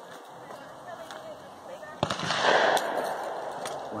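A single black-powder shotgun shot about halfway through: a sharp crack followed by a long noisy tail of about a second and a half.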